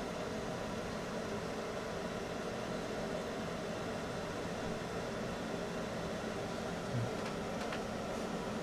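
Steady low background hum and hiss with no distinct event, broken only by a brief low bump about seven seconds in.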